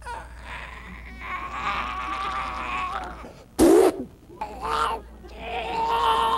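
A man making drawn-out, strained vocal groans and wails, with a short loud outburst about three and a half seconds in.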